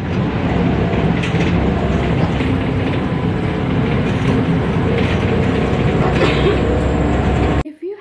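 Cabin noise inside a moving Batik Solo Trans city bus: steady engine hum and road rumble, cutting off suddenly near the end.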